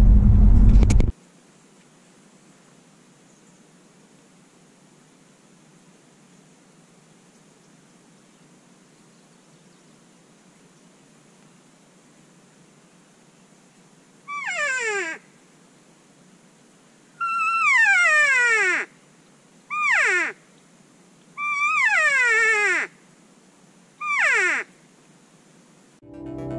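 Five loud, high-pitched calls, each sliding steeply down in pitch over about a second, a second or two apart, starting about halfway through: elk cow calls (mews) of the kind used to draw a bull elk in.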